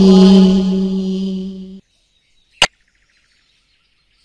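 A voice holding one long sung note from the alphabet playback of English-learning software, fading out and stopping about two seconds in. A single sharp click follows, as the software moves on to its letter menu.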